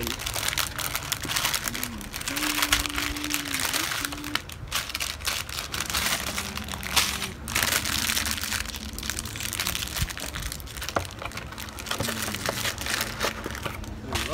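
Thin plastic parts bag crinkling as it is handled and torn open, with small plastic building-brick pieces clicking and rattling as they spill out of it.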